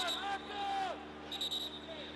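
Football stadium ambience: a few distant shouting voices from the pitch and stands over a steady low hum.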